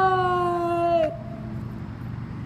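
A woman's long wail of distress, held on one slightly falling pitch and breaking off about a second in.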